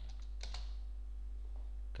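A few keystrokes on a computer keyboard in the first half second, the last characters of a typed password, over a steady low hum.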